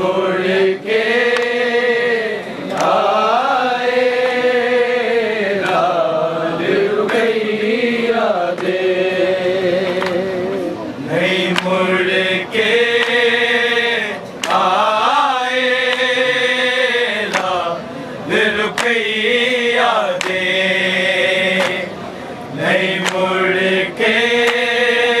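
Group of men reciting a Punjabi noha in unaccompanied chorus: long, wavering sung lines a few seconds each, with short breaks between them. Occasional sharp hand slaps sound along with the chant.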